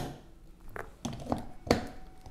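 Light handling noises from a watch on its cushion in a watch winder's drum: a sharp click at the start, then a few soft taps and clicks as a hand adjusts it.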